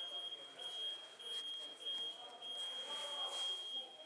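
A faint, steady, high-pitched electronic tone that breaks off briefly a few times and stops near the end, over muffled background voices and a few light knocks.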